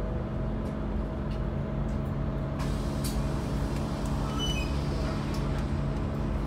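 Scania N280UD bus's biogas engine idling steadily, heard from inside the passenger cabin, with a few faint clicks and a short high tone about four and a half seconds in.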